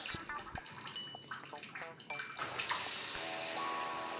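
Bathroom tap running water into a ceramic washbasin: a thin trickle at first, then a louder, steady gush from a little over halfway through as the flow is turned up at the lever.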